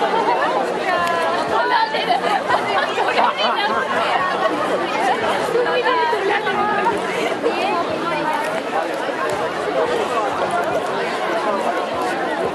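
Crowd chatter: many voices talking at once in overlapping conversations, with no single speaker standing out.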